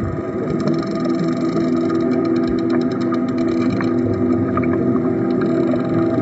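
A steady low drone of several held tones, like a motor, with scattered faint clicks.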